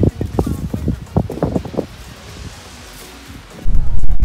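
Outdoor recording with short, irregular knocks and rustles in the first couple of seconds. Near the end, wind starts buffeting the microphone with a loud, low rumble.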